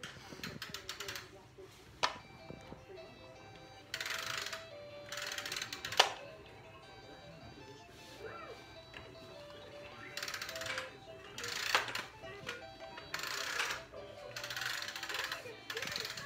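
A toddler playing with plastic toys: sharp knocks about 2, 6 and 12 seconds in and bouts of rattling, with a toy's simple electronic tune playing faintly.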